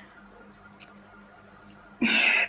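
A quiet lull in live-call audio: faint steady background hum with two brief soft clicks, about a second in and near the end.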